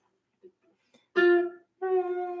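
Ukulele notes plucked after about a second of near silence: one note a little past one second in that fades quickly, then another starting near the end.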